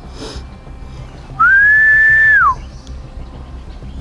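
One long whistled note about a second and a half in: it slides up, holds steady for about a second, then drops away.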